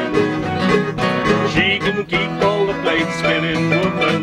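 A live acoustic country-folk band: two acoustic guitars and a small-bodied plucked string instrument playing together in a steady rhythm, with a man's voice singing the song's verse.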